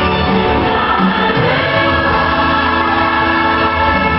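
A church choir singing with a live worship band. The voices hold long notes over a bass line.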